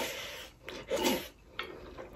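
Close-miked eating sounds from a meal of rice and lamb curry eaten by hand: a handful taken into the mouth and chewed, with two loud wet bursts about a second apart, then quieter scratching of fingers on the plate.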